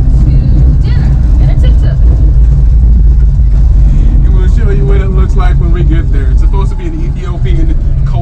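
Tuk-tuk (auto rickshaw) heard from inside its cabin while riding: a loud, steady low rumble of engine and road. Voices rise over it in the second half.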